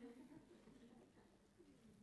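Near silence: room tone, with a faint low sound in the first half second.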